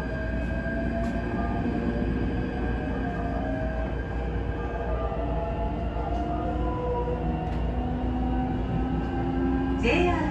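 Electric commuter train pulling out of a station, heard from inside the passenger car: a low running rumble with the motors' whine in several steady tones that shift pitch as the train picks up speed.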